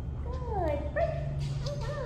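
Young Shetland sheepdog giving a few high, whining yips that fall in pitch, over a steady low hum.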